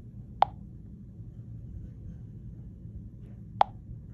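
Two short, sharp clicks about three seconds apart from tapping a handheld music player's touchscreen, over a faint steady low hum.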